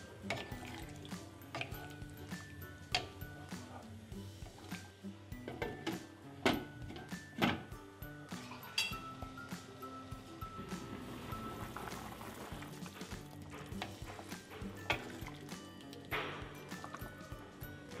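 Background music over a wooden spatula stirring a pork curry in a pan, with scattered sharp knocks of the spatula against the pan.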